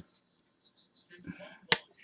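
A single sharp click about three quarters of the way in, from a clear plastic trading-card holder being handled, with faint handling noise just before it.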